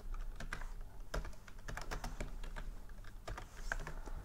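Computer keyboard being typed on: an irregular run of key clicks as a short name is entered.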